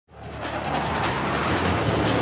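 Fighter jet engine noise as the jet flies past, a loud steady rush that fades in quickly at the start.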